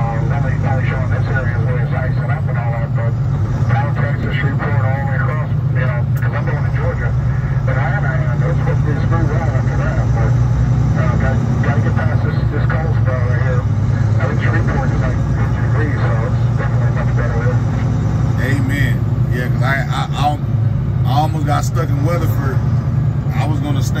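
Steady low drone of a semi-truck's engine and road noise heard inside the cab at highway speed, with people talking over it throughout.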